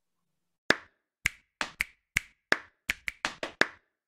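A run of sharp, dry claps in an uneven, quickening rhythm, about eleven in three seconds, starting just under a second in after a short silence.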